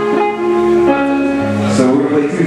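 Amplified guitar picking a few sustained notes that step from one pitch to the next, played as noodling or an intro between songs.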